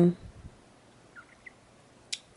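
The end of a drawn-out hesitation 'um' in a person's voice, then quiet room tone with a few faint, very short squeaks about a second in.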